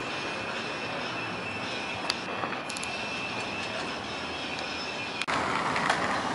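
Outdoor ambience: a steady hiss with a thin, steady high-pitched tone and a couple of faint clicks. About five seconds in it changes abruptly to a louder hiss.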